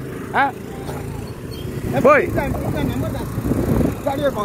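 Steady low rumble and road noise of a moving vehicle that carries the microphone, with a few short spoken words over it.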